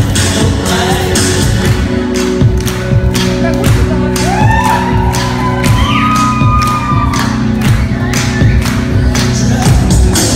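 Amplified live pop music through a PA speaker, with a steady beat and a voice singing over it.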